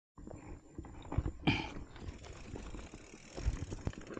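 Handling knocks and clatter from a hardtail mountain bike being lifted off the ground and mounted: irregular thumps, the loudest a sharp clack about a second and a half in.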